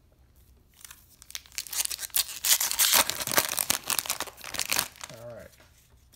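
A foil trading-card pack wrapper being torn open and crinkled by hand: dense crackling that starts about a second in, is loudest in the middle and dies away near the end.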